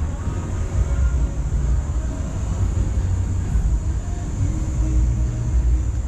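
Outdoor urban ambience: a steady low rumble, with no clear single event standing out.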